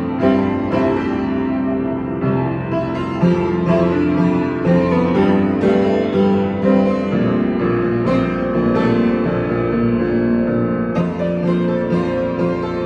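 Upright acoustic piano played with both hands: held chords under a melody line, with new notes struck about every half second.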